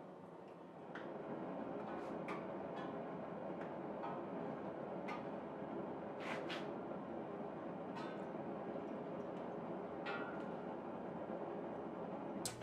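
Red-hot O1 steel axe head held submerged in heat-treating oil during the edge-hardening quench. The oil sizzles steadily, with scattered crackles and pops, starting about a second in.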